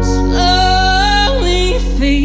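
Live acoustic country band playing, with acoustic guitars and drums under a woman's singing voice. About half a second in she holds a high note, then breaks suddenly down to a lower one.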